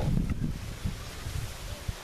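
Wind on the microphone: an uneven low rumble in gusts, with leaves rustling.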